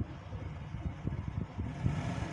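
Pen drawing on paper over a desk, with faint irregular taps and scratches, over a low background rumble.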